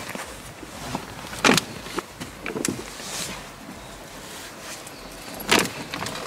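A man clambering across a car's front seats and over the centre console: rustling clothes and seat fabric, with a few short knocks and bumps, the sharpest about a second and a half in and just before the end.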